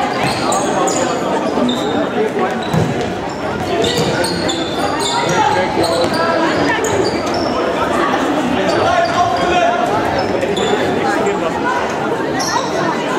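Indoor football on a sports-hall floor: the ball bouncing and being kicked on the hard court, and trainers squeaking in short high chirps as players run and turn. Voices from the sidelines echo around the hall throughout.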